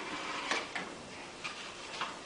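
A few light knocks and clicks from performers moving on a stage, against a quiet hall background; the clearest comes about half a second in.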